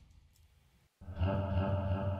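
About a second of silence, then a pitched-down vocal sample from a liquid drum and bass intro comes in suddenly and holds one low sustained note.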